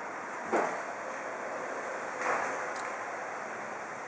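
Steady rushing background noise, like wind on the microphone, with two faint brief sounds about half a second and two seconds in.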